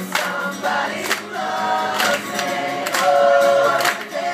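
Live acoustic pop song: several voices singing together in unison over strummed acoustic guitar, with sharp accented beats and a long held note near the end that is the loudest part.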